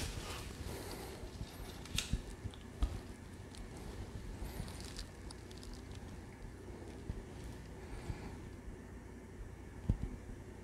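Faint handling noise as a young snake is lifted out of a paper-lined plastic rack tub: soft rustling with a few light clicks, the sharpest about two and three seconds in and again at the very end.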